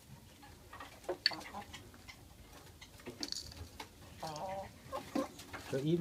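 Light clicks and taps of a spoon scraping and knocking in a small can and cup as dry bird feed is scooped out, with a short low wavering call about four seconds in.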